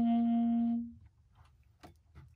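Tenor saxophone holding one long, steady note that stops a little under a second in, followed by a couple of faint clicks.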